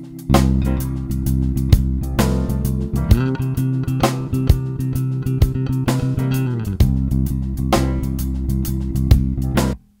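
Electric bass guitar (Fender Jazz Bass) playing long, sustained low notes that sit almost entirely on the root of a C7 groove, over a drum beat. This is the plain stuck-on-the-tonic bass line. The note steps up slightly for a few seconds in the middle, returns, and the playing cuts off suddenly just before the end.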